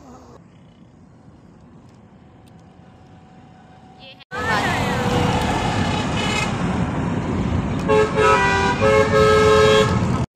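Faint running noise of a moving car at first. About four seconds in the sound jumps sharply to loud road and traffic noise, with vehicle horns sounding in several short blasts near the end.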